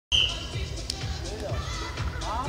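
A referee's whistle gives one short, high blast right at the start, signalling the start of the bout, followed by voices and low knocks in the hall.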